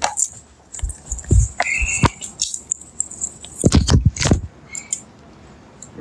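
Scuffling and handling noise close to a phone's microphone during an arrest: metallic jangling and clattering with several dull thumps, the heaviest cluster a little past the middle.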